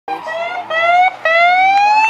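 Warning siren of an approaching rally course car: a loud wail that steps up in pitch, breaks off briefly about a second in, then climbs steadily higher. The car's engine runs faintly beneath it.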